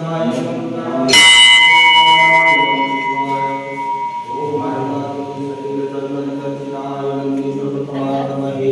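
A brass temple bell struck once about a second in, its clear ringing tone dying away slowly over several seconds. A group of voices chants throughout.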